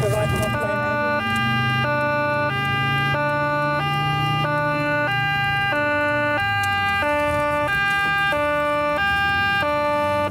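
Two-tone emergency siren of a police car, switching steadily between a higher and a lower note about every 0.6 seconds, over a low vehicle drone.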